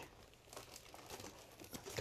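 Faint crinkling and rustling of packaging as items are dug out of a cardboard box, starting about half a second in.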